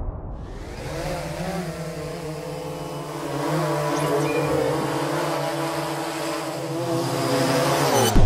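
Quadcopter drone's rotors buzzing: a steady pitched hum with hiss that slowly grows louder and cuts off abruptly at the end.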